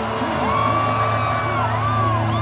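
Gothic rock band holding a sustained chord as a song ends, under a concert crowd cheering, with long whoops that rise, hold for about a second and fall away.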